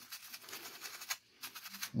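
Faint, scratchy rubbing of a paintbrush dry-brushing paint lightly over textured stone, with a short pause a little past the middle.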